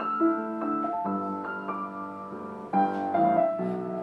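Knabe WMV121FD upright acoustic piano played slowly and gently, notes ringing on under the sustain, with a new chord about a second in and a louder one near the three-second mark.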